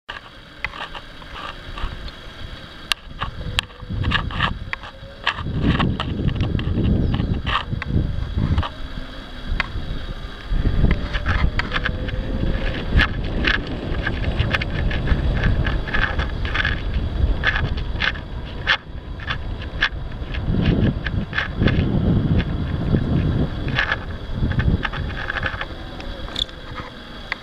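Wind buffeting an outdoor camera microphone in uneven gusts, with many scattered sharp clicks and faint steady high tones underneath; the electric bike itself is quiet.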